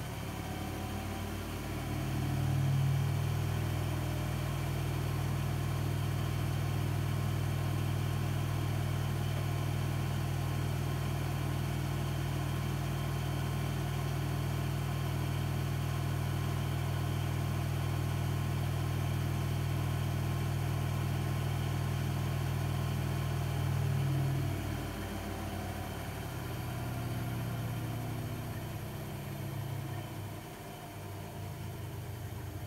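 Zanussi ZWF844B3PW washing machine on its short final spin. The drum motor climbs to full speed about two seconds in and holds a steady hum for around twenty seconds at 1200 rpm. Near the end it winds down with falling pitch as the spin brakes.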